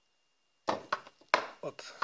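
Two sharp clacks from a screwdriver and the plastic gears of an HSP RC car differential as the screwdriver, wedged in the output cup, is let fall to test how freely the differential turns, with the man saying "hop".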